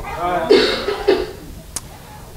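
A person coughing about half a second in, then a single faint click near the end.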